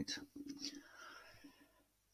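A person whispering or murmuring faintly, fading out to silence near the end.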